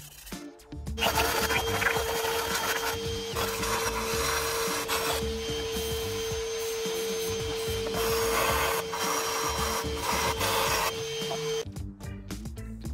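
Aerosol cleaner spray can hissing in one long spray of about ten seconds, with a steady pitched tone under the hiss and a few brief dips. It is spraying into a diesel engine's carbon-fouled intake ports.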